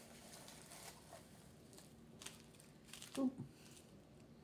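Faint rustling of crinkle-cut paper shred packing filler as a hand digs through it in a cardboard box, coming as a few brief crinkles.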